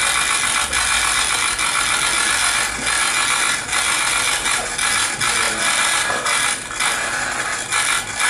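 Many camera shutters firing rapidly at once, a dense clatter of clicks from press photographers as two men shake hands for the cameras.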